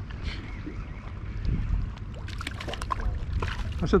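Wind rumbling on the microphone over shallow water, with a short run of sharp clicks in the second half.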